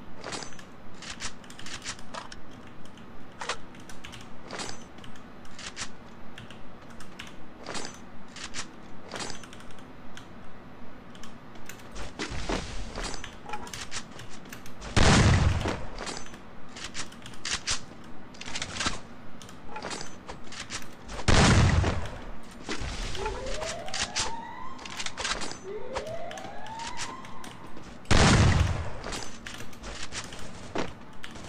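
Shooter video game gunfire: a steady run of shots about two a second, with three loud explosions about halfway, two-thirds of the way through and near the end. Two short rising whistles sound between the last two explosions.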